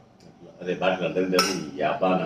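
A spoon clinking against a steel serving bowl at the table, one sharp clink about one and a half seconds in, under a voice talking.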